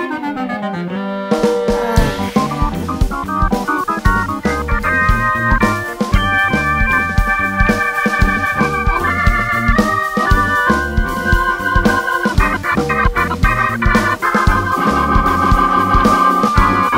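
Instrumental break of a Greek pop song with no singing: a falling pitch glide, then about a second in the full band comes in with a steady drum beat, bass and a keyboard playing chords and a melody.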